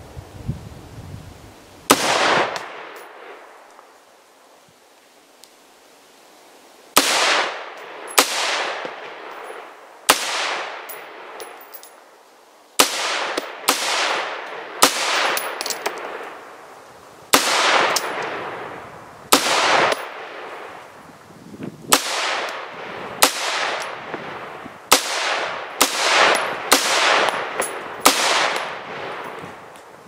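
About twenty single shots from a semi-automatic 5.56 AR-15 rifle, each trailing off in a short echo. One shot comes about two seconds in, then a pause, then steady fire that quickens toward the end.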